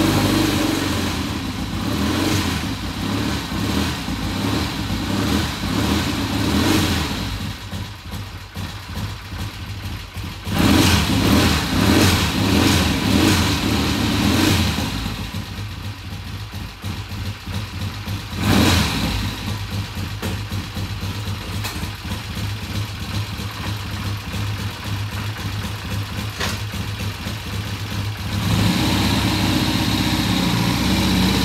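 1967 Triumph TR6's 650 cc parallel-twin engine running moments after being kick-started into life. It is revved up in stretches of several seconds and settles back to idle between, with one short blip about two-thirds of the way through.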